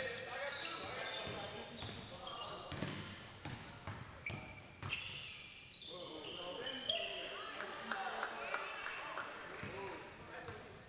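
A basketball being dribbled and bouncing on a hardwood gym court, in repeated sharp knocks, with brief high-pitched sneaker squeaks and players' voices in the background.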